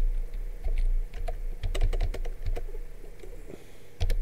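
Typing on a computer keyboard: irregular key clicks, thicker in the middle and thinning out near the end, over a low background hum.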